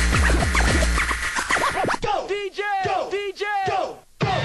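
Hardcore techno DJ mix: a pounding kick-drum beat for about the first second, then the beat drops out and turntable scratching takes over from about two seconds in, a sample dragged back and forth about three times a second.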